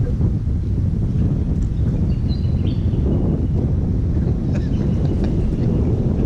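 Wind buffeting the camera microphone: a steady, loud low rumble.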